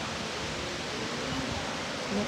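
Steady, even hiss of room background noise with no speech over it.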